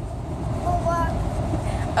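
Steady low rumble of a car's engine and tyres heard inside the cabin while driving, with a few brief voice sounds.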